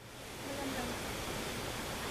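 Steady rushing of fast-flowing, muddy stream water.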